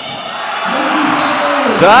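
Basketball arena crowd noise swelling steadily louder, with the commentator's voice coming in near the end.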